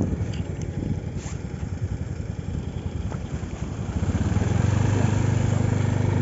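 A small automatic motor scooter's engine running at close range, a low, fast-pulsing rumble that becomes louder and steadier about four seconds in.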